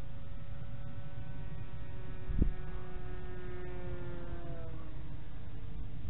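Electric motor and propeller of a foam-board RC Cessna 172 whining steadily in flight, the pitch falling slightly before it fades out about five seconds in. Wind rumbles on the microphone, with a brief thump a little over two seconds in.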